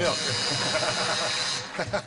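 Studio audience laughing and applauding at a game-show answer, a dense crowd noise that fades out about a second and a half in.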